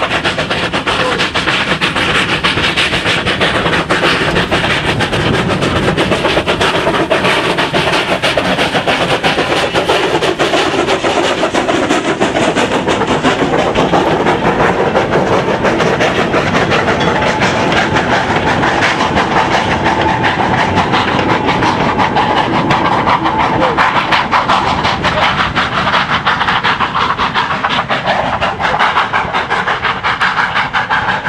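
Beyer Peacock 0-4-0 and Haydock Foundry 0-6-0 industrial steam tank locomotives working hard up a steep bank with a goods train: rapid, heavy exhaust beats, the 'thrash' of a loco under full load, over the clatter of the wagons rolling past. The sound stays loud as the train passes and climbs on out of sight.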